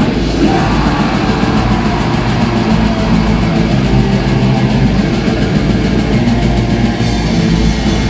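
Live heavy metal band playing loud and without a break: distorted electric guitars, bass and drum kit.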